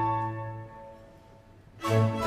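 A baroque opera orchestra's held chord dies away into a brief silence, then bowed strings strike up a new passage near the end.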